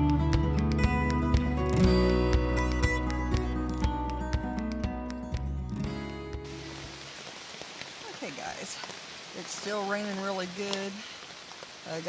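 Background music fades out about six seconds in and gives way to steady falling rain. A voice is heard briefly near ten seconds.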